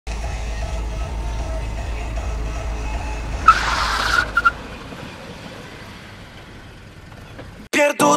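A car's low engine rumble heard from inside the cabin, broken about three and a half seconds in by a sudden loud tyre screech lasting under a second, followed by two short squeals. The rumble then dies away and music starts just before the end.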